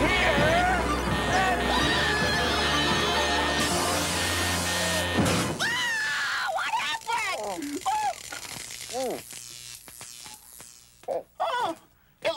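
Comedy music and sound effects of a prop contraption running, building to a loud hissing blast about four seconds in that cuts off suddenly a second later as the machine blows out its flour. Then groans and wordless cries that slide up and down in pitch.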